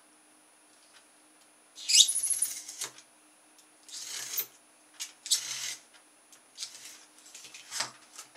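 A craft knife drawn along a steel ruler, slicing through cardboard in three cutting strokes about a second apart, starting about two seconds in. Softer scrapes and rustles of the cardboard being handled follow near the end.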